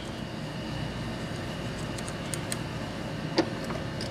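A rag rubbing over a small copper-plated metal part as it is hand-polished: a soft, steady scrubbing with a few light clicks of the metal, the sharpest about three and a half seconds in.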